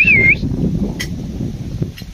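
A short, high, wavering whistle-like note right at the start, over a steady low rumbling noise, with a single sharp click about a second in.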